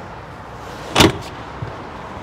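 Second-row seatback of a Chevrolet Trailblazer folding forward after its release button is pushed, landing flat with a single knock about a second in.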